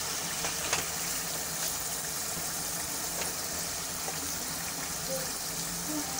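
Meat curry sizzling steadily in its masala in a metal pan: an even hiss with a few faint ticks.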